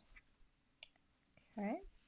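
Faint handling of card stock as a patterned-paper layer is set onto a card base and pressed down, with one short click a little under a second in.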